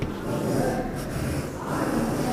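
Chalk scraping on a chalkboard in a few short strokes as letters are written.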